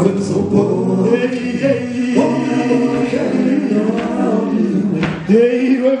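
A group of voices singing together live, a Zulu sangoma (traditional healer's) song.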